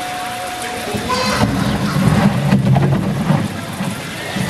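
Onlookers' voices and crowd noise, with a louder low rumbling noise from about a second in until near the end.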